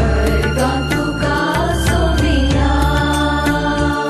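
Music of a Konkani devotional song: held melody notes over a steady bass line, with regular percussion beats.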